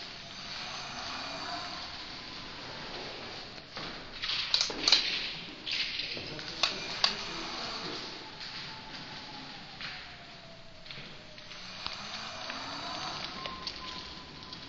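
An electric scooter's motor whining, the pitch falling as it slows and rising again as it speeds up. A cluster of sharp squeaks and clicks comes in the middle.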